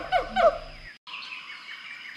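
A bird chirping in a rapid series of short falling notes, about six a second, that stops abruptly about half a second in. After a brief cut to silence, fainter high bird calls follow.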